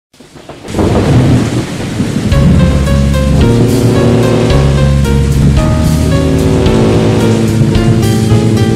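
A thunder rumble with rain swells up, then music with a heavy bass comes in about two seconds in and carries on.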